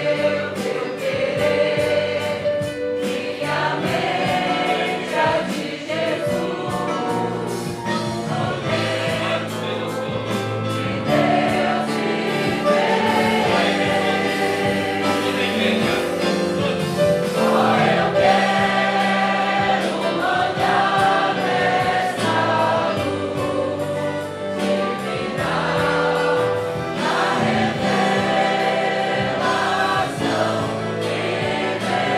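A congregation singing a Portuguese hymn together with instrumental accompaniment, moving from a verse into the chorus about halfway through.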